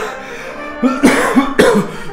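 A man coughing and gasping in a short cluster of loud bursts about a second in, over steady background music.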